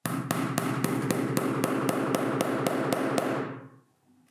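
A hammer striking nails into a painting panel, a rapid even run of about thirteen blows, roughly four a second, that dies away near the end.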